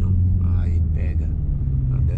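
Chevrolet Corvette's V8 and road noise heard from inside the cabin while cruising, a steady low drone, with a few words of speech about halfway through.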